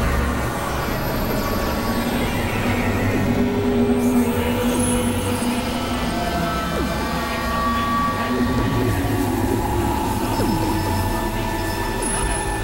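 Experimental electronic drone music: layered steady synthesizer tones at several pitches, shifting every second or two, over a dense low rumbling noise bed.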